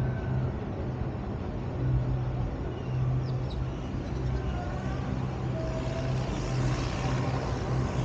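Outdoor city background: a steady low hum under an even wash of noise.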